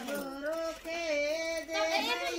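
A high woman's voice singing unaccompanied: long held notes that waver slightly, with a short break about halfway through.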